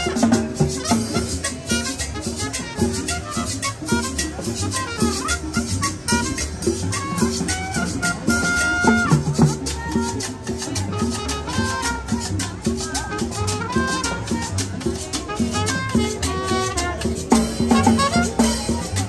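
Live street band playing upbeat Latin dance music, with drums keeping a steady, fast beat under a melody line.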